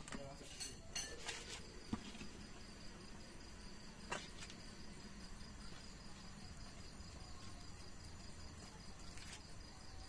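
Crickets chirping steadily and faintly. A few light clicks and knocks from a metal pot and lid being handled come in the first two seconds, and one more click about four seconds in.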